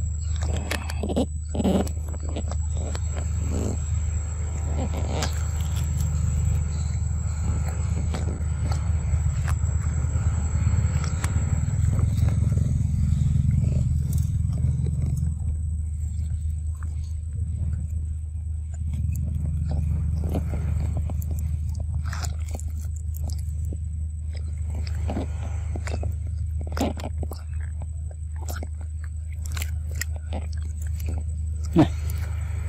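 A steady low rumble runs throughout, with small irregular clicks and wet sucking sounds from a long-tailed macaque sucking fruit juice from a carton held to its mouth.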